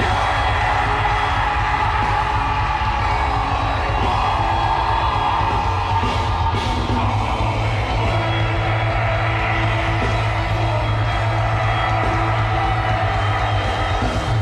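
Black metal band playing live at full volume: distorted electric guitars and fast drums in a dense, unbroken wall of sound.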